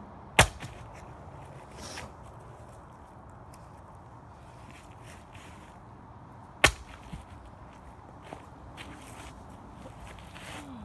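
Two loud, sharp cracks of impact, the first just after the start and the second about six seconds later.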